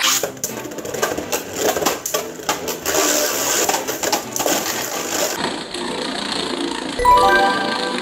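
Two Beyblade Burst spinning tops whirring and clashing in a plastic stadium, a rapid run of clicking hits against each other and the stadium wall. The clatter eases about five seconds in. Background music plays throughout.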